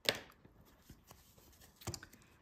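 Handling of a sheet of stiff felt on a cutting mat: a short sharp swish of the felt being brushed and moved at the very start, faint rustles, then a smaller swish near the end as the sheet is picked up.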